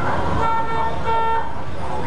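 Car horn sounding two short toots of about half a second each, one steady pitch, over street noise.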